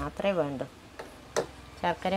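A woman speaking briefly, then a pause broken by a sharp click, then her voice again near the end.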